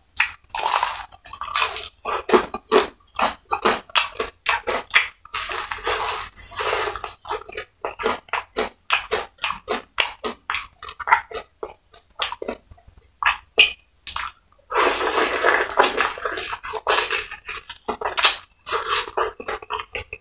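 Close-miked crunching and chewing of crisp batter-fried chicken: rapid crackling bites and wet chewing in quick runs with short pauses.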